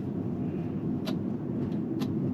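Steady low road and tyre rumble of a Tesla electric car driving, with a faint click about a second in.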